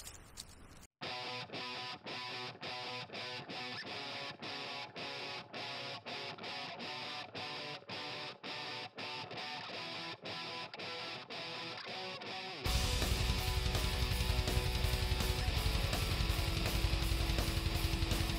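Background music, guitar-led, with a steady rhythm starting about a second in. About two-thirds of the way through it becomes fuller and louder, with a heavy low end.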